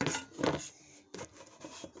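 Handling noise from a phone being gripped and set down on a wooden deck: rubbing and scraping right on the microphone, loudest at the start and about half a second in, then a few light knocks.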